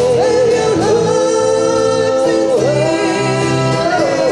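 A woman singing a song live into a microphone, holding long notes that dip and bend, over acoustic and electric guitar accompaniment.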